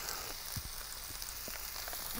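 Faint steady sizzling of food on a grill, with a few light ticks.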